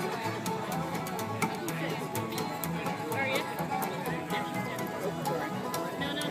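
Acoustic bluegrass jam: upright basses and acoustic guitars playing together, with a steady bass line under rapid picked strums.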